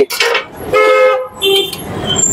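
Vehicle horn honking twice in street traffic: a short, steady-pitched blast about a second in, then a shorter second honk at a different pitch.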